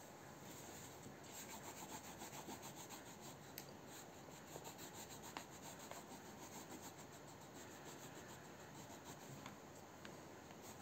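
Crayon rubbed back and forth on sketchbook paper while colouring in: faint, quick strokes that come thickly through the first half and more sparsely later.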